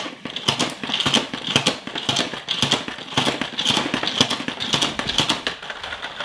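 Plastic salad spinner being worked by hand, its basket of washed lettuce spinning: a fast, uneven run of clicks from the spinning mechanism.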